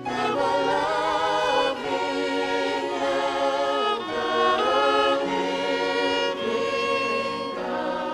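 Mixed choir singing a slow song in harmony with long held notes, the voices coming in at full strength right at the start.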